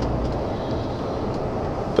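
Steady engine and road noise heard inside the cab of a MAN TGX lorry cruising at motorway speed.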